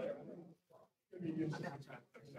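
Indistinct conversation in a large meeting room: people talking quietly off-microphone in two short phrases with a brief pause between them.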